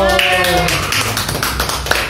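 A small group clapping by hand, a quick, uneven patter of claps, right after a song ends; the last sung note and acoustic guitar chord fade out in the first half-second.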